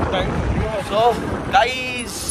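Low, steady wind rumble buffeting the microphone, with a voice talking over it.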